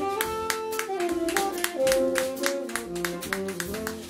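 Live small-group jazz: acoustic piano, upright double bass and drum kit playing, with a stepping melody line over a walking bass and steady cymbal strokes.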